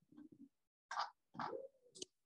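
Faint computer mouse clicks while slides are selected, with a brief low hum-like tone a little past halfway.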